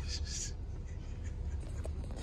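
Steady low rumble of an idling car heard from inside the cabin, with a small click near the end.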